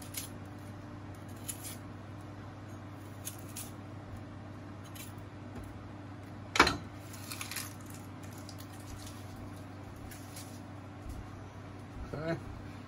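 Faint crackly handling of an onion being peeled on a wooden cutting board, then one sharp knife cut through the onion onto the board about six and a half seconds in, followed by a few lighter cuts. A low steady hum runs underneath.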